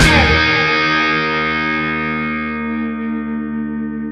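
Final chord of a rock song: a last band hit right at the start, then a distorted electric guitar chord ringing out and slowly fading.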